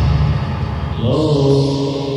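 Early-1990s hardcore/acid electronic music: a heavy low stab fades out, and about a second in a held, chant-like tone comes in with a slight upward slide, then stays at a steady pitch.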